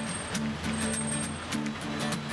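Steel-string Taylor acoustic guitar strummed unplugged in a steady rhythm, the chords ringing between strokes.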